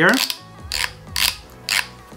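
Headband slider of an Anker Soundcore Life Q35 headphone being extended, clicking through its adjustment steps in a few short ratcheting bursts about half a second apart.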